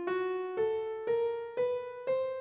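Piano-like keyboard tone playing the notes of Scale 3683 (Dycrian) one at a time, climbing as a rising scale, a new note about every half second with each ringing until the next.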